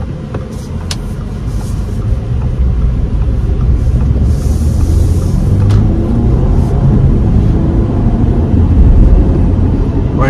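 Cabin noise of a 2023 Audi Q5's 2.0-litre turbocharged four-cylinder as the SUV accelerates from a standstill: a low engine and road rumble that grows steadily louder as speed builds.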